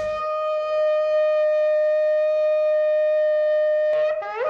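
One long, steady horn-like note, bright with overtones, held for about four seconds and cut off sharply at the end, as part of a radio show's opening music.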